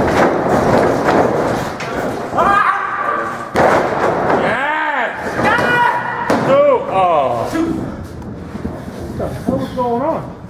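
Heavy thuds of wrestlers hitting the canvas of a wrestling ring, echoing in a large hall. Men's voices shout in between.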